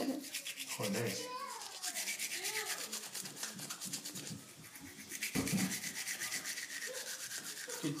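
A manual toothbrush scrubbing teeth in quick, even back-and-forth strokes. The bristles rasp against the teeth.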